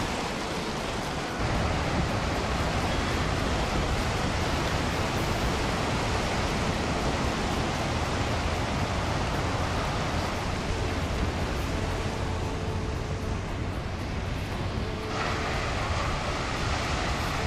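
Steady noise of wind and breaking surf on an exposed coast, with a heavy low rumble of wind on the microphone.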